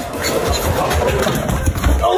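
Longboard wheels rolling on a concrete path: a steady low rumble with gritty noise.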